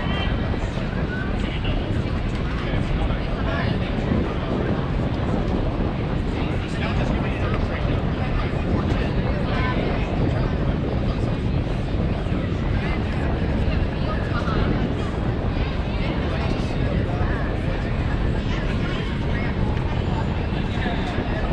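Indistinct, distant voices of young ballplayers and coaches over a steady low rumble.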